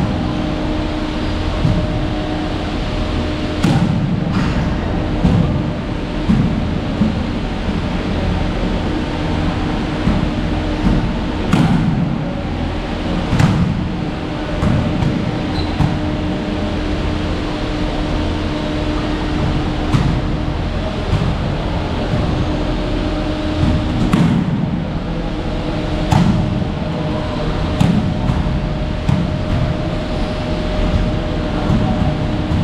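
Steady low rumble and hum of a gym, with a sharp knock or click every few seconds, some in close pairs.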